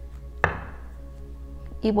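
A single sharp tap of a tarot deck or card on the tabletop about half a second in, over soft steady background music.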